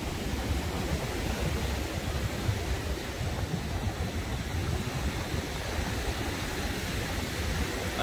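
Sea surf washing onto a sandy beach in a steady, even noise, with wind rumbling on the microphone.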